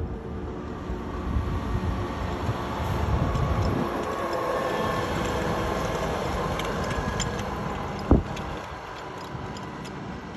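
Volvo FH16 610 heavy truck's diesel engine running as it passes at road speed pulling a low-bed trailer, a steady rumble that swells as it draws level and eases after about eight seconds. A single sharp thump comes about eight seconds in.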